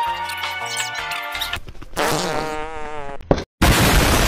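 Edited-in comedy sound effects: background music for the first second or so, then a long, wavering pitched sound effect, cut off near the end by a short, loud explosion sound effect.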